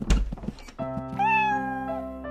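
A thud and a quick run of knocking clatter as a cartoon front door opens, then a kitten's single meow, just under a second long, over light background music.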